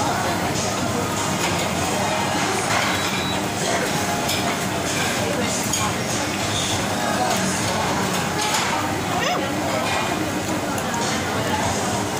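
Restaurant din: indistinct chatter of many diners over background music, with occasional clinks of dishes and cutlery.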